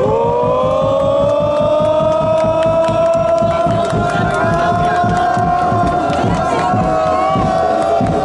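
A crowd of football supporters holding one long chanted note that rises at first and then stays level, over a quick rhythmic beat.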